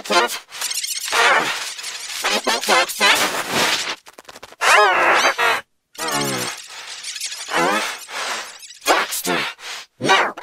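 Cartoon dialogue run through heavy audio effects: the voices waver and warble in pitch and come out garbled, with no words recognisable. The sound cuts out abruptly for a moment about six seconds in.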